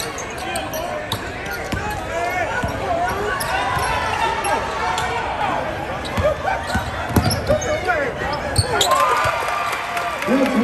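Basketball game in a gym: a crowd of spectators and players shouting and chattering throughout, over a basketball bouncing on the hardwood court with scattered sharp knocks.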